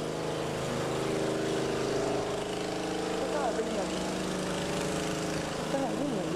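A motor-vehicle engine running steadily close by, a continuous droning hum in street traffic, with faint voices in the background.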